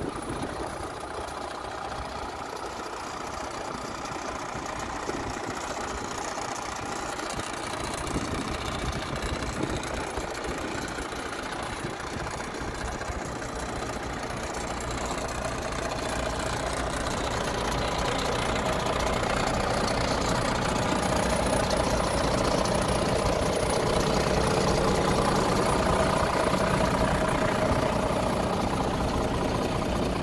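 Iveco Trakker 410 truck's six-cylinder diesel engine idling steadily, growing louder about halfway through.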